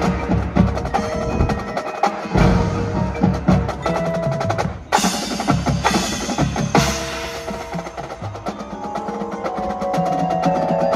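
High school marching band playing its competition show, with drums and mallet percussion to the fore. The music dips briefly just before a sharp, loud accented hit about five seconds in, with another strong hit near seven seconds.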